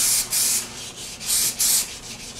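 Sandpaper worked by hand over a primed panel in quick back-and-forth strokes, knocking down a too-thick coat of primer. One pair of strokes comes at the start and another about a second and a half in.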